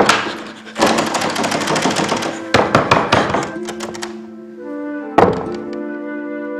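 Dramatic film score: loud, heavy percussion hits and a dense crash of sound, giving way about halfway to a low held chord, with one more sharp hit near the end.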